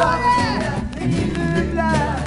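Band recording: a woman singing lead over strummed guitars, banjo and a steady bass line.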